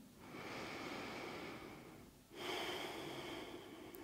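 A woman's slow, deep breathing picked up close by a clip-on microphone: two long breaths of about two seconds each, with a short pause between them.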